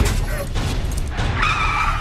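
Film sound effects of a vehicle skidding: a heavy hit at the start, then a dense low rumble with a high tyre screech about one and a half seconds in.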